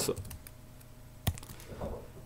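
Computer keyboard being typed on: a few separate keystrokes, a quick cluster at the start and a single one a little past the middle.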